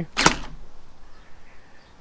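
A single sharp shot from a Wells CQB gel blaster (nylon V2 gearbox, stock) about a quarter second in, then quiet.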